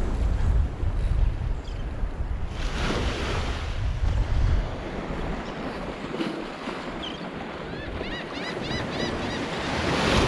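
Small waves breaking and washing up a sandy beach, with wind buffeting the microphone, heaviest in the first four or so seconds. Near the end comes a quick run of faint high chirps.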